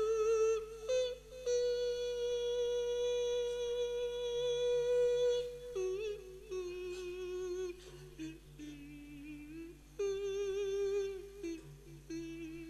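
A Buddhist monk's sung sermon in Thai lae style, amplified through a microphone. One male voice holds long notes with a wavering vibrato: a high note held for about four seconds, then lower notes stepping down, rising again near the end.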